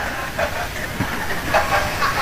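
Low murmur of a large seated audience, a haze of noise with a few faint scattered voices, during a pause in the preacher's talk.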